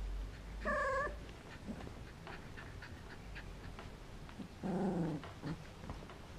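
Golden retriever puppies, about three weeks old, making small calls while playing together: a short high squeak about a second in, and a lower, longer grumble near five seconds.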